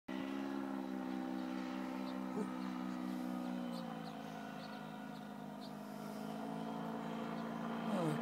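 Paramotor (powered paraglider) engine and propeller droning overhead, a steady buzzing hum whose pitch drops a little about halfway through as it fades slightly, then slowly grows louder again.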